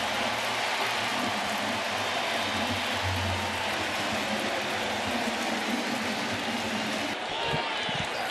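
Large stadium crowd cheering steadily for a home run. About seven seconds in the sound cuts to quieter ballpark crowd noise.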